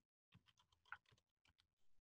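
Near silence with a few faint computer keyboard clicks; the strongest click comes about a second in.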